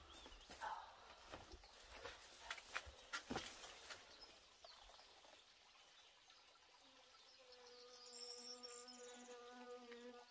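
Faint, scattered clicks and rustles, then a flying insect's steady buzz from about seven seconds in to the end.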